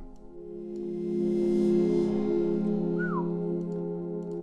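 Software synth pad in Reason 10 holding a sustained chord through the mixer's plate reverb and delay sends. It swells in over the first second or so and then holds steady, with a short falling whistle-like glide about three seconds in.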